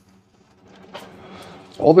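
Faint rustle of cannabis leaves and stems being handled, with a faint click about a second in, then a man starts speaking near the end.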